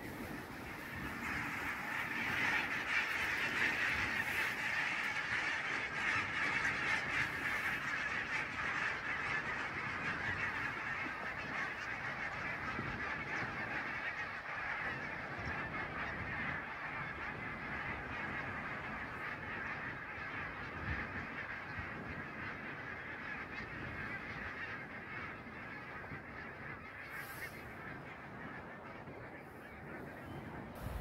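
A large flock of geese in flight, many birds honking at once in a continuous, dense clamour that swells up about a second in and slowly fades as the flock moves off.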